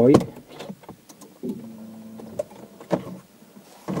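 Scattered plastic clicks and knocks of a plastic trim-removal tool prying at the clipped dashboard trim around a car's head unit. A short steady low hum sounds for about a second in the middle.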